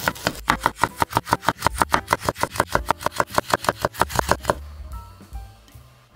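A kitchen knife slicing a raw carrot into rounds on a wooden cutting board. Each cut ends in a knock of the blade on the board, in a quick even rhythm of about eight a second, stopping about four and a half seconds in.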